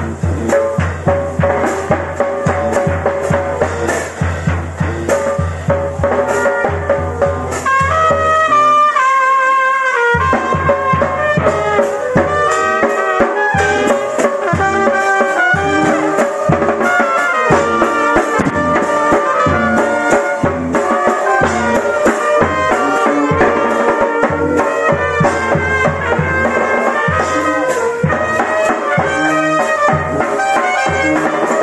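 Brass band music with trumpets and trombones over a drum beat, with a long held chord about eight seconds in before the band picks up again.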